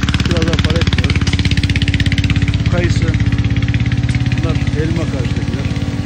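Başak tractor's diesel engine running steadily with a fast, even pulse.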